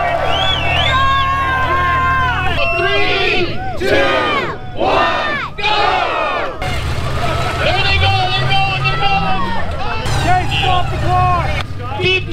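Crowd of spectators shouting and cheering over an off-road rig's engine running. The engine revs up briefly about eight seconds in.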